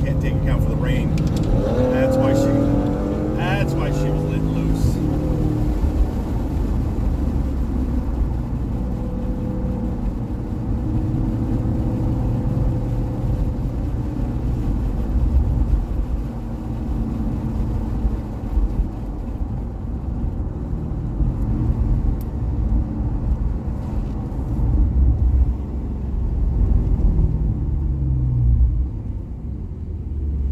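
Porsche sports car's engine and tyre noise heard from inside the cabin while driving slowly behind other cars, the engine note rising and falling with the throttle about two seconds in and again near the end.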